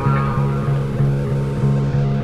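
Background music: a low bass note repeating about three times a second under held higher tones.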